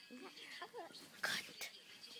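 A baby making soft coos and little grunting vocal sounds, with a short breathy burst a little past the middle.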